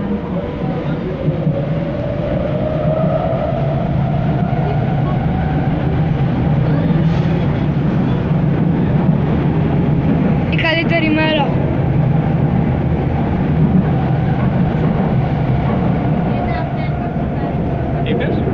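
Athens metro train running through a tunnel, heard from inside the carriage: a steady, loud rumble of wheels on rails, with a whine that rises in pitch over the first several seconds as the train gathers speed.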